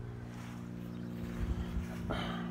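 An engine idling steadily, a low even hum, with a couple of soft low thumps about one and a half seconds in.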